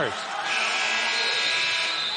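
Referee's whistle held for about a second and a half, stopping play for a timeout, over the background noise of a basketball arena crowd.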